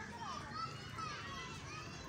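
Children playing in the distance: several high voices calling and chattering over each other, none close or clear.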